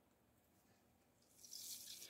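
Mostly near silence; near the end, faint wet squelching of blended banana being squeezed by hand through a cloth strainer.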